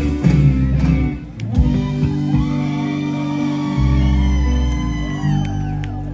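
Live rock band with electric guitars and drums ending a song: a run of drum hits, then a final chord held and ringing for about four seconds before it cuts off near the end.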